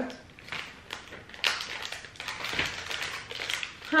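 Paper packaging crinkling and rustling in the hands, with light taps, as a gold paper candy bag is turned over and handled.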